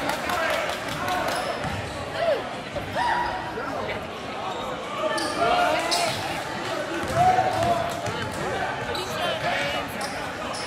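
Basketball being dribbled on a hardwood gym floor during live play, with sneakers giving short, frequent squeaks as players cut and stop, all ringing in a large gym.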